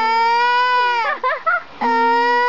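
Toddler girl crying in a sulk: a long wail that falls in pitch and breaks off about a second in, a few short catching sobs, then another wail starts near the end.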